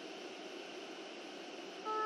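Steady hiss of digital noise forming the opening texture of an experimental 8-bit ambient electronic track. Just before the end, a chord of sustained synth tones comes in over it.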